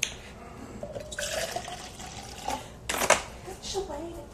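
Liquid pouring and sloshing from an opened plastic juice jug, with one sharp knock just before three seconds in.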